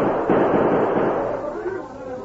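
Radio-drama sound-effect gunfire from a 1950s recording: a quick volley of revolver shots that ring out and fade away over about a second and a half.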